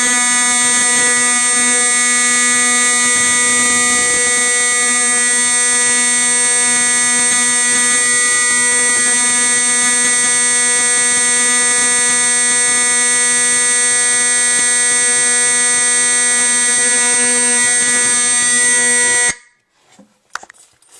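Simplex 4051 24-volt DC fire alarm horn sounding continuously with a loud, steady buzzing tone, then cutting off suddenly near the end.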